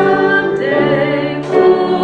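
A woman's solo voice singing a slow song, holding long notes with vibrato and changing note a couple of times, over musical accompaniment.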